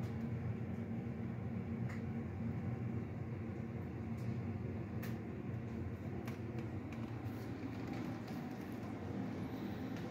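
Steady low hum with a few faint, sharp clicks.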